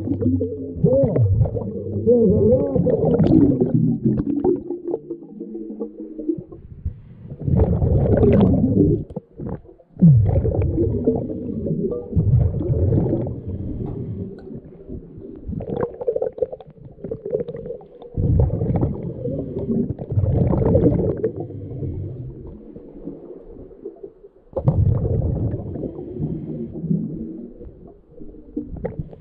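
Scuba diver's exhaled breath bubbling out of the regulator, heard underwater as rumbling, gurgling bursts a few seconds apart with quieter spells between breaths.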